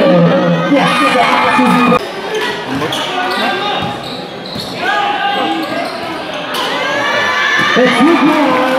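Raised voices and crowd noise at a basketball game, with a basketball being dribbled on a concrete court; the voices are loudest in the first two seconds and again near the end.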